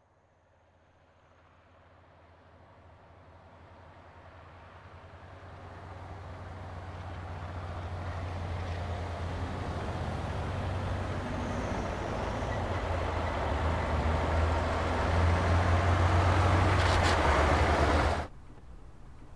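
Motor vehicle engine and road noise with a steady low hum, growing gradually louder as it approaches, then cutting off abruptly at the end.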